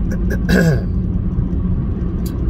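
A person gives a short throat-clearing grunt about half a second in, falling in pitch, over a steady low rumble.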